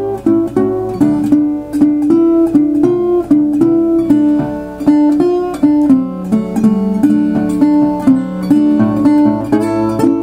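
Metal-body resonator guitar in open D tuning fingerpicked as a blues shuffle: a steady pulsing bass note under short treble licks in a swung rhythm.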